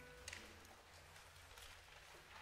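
Near silence: the tail of a single held piano note fades out in the first moment, followed by faint rustles and small clicks.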